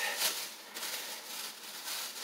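Thin plastic shopping bag rustling and crinkling as it is handled, louder just after the start and fainter after.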